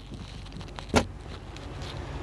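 A single short knock about a second in, over a low steady hum.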